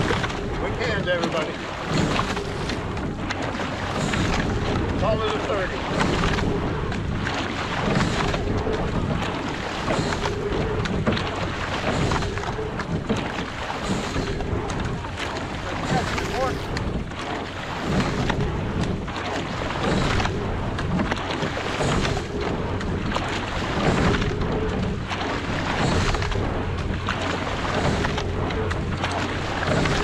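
Sculling shell under way at a steady stroke rate: the blades catch and drive through the water in a cycle that repeats about every two seconds, with water rushing along the hull and wind on the microphone.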